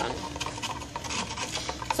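A coffee stirrer scraping and rubbing around the inside of a cup, stirring sugar into hot tea.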